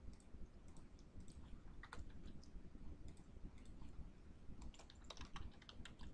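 Faint typing on a computer keyboard: irregular key clicks, coming more thickly near the end.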